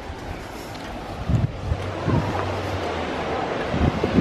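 Wind buffeting the microphone in a dense, steady rush that grows louder about a second in, with a few low thumps of handling.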